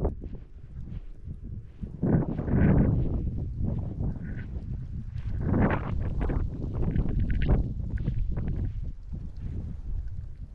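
Footsteps in deep snow, irregular crunches, with wind rumbling on the microphone.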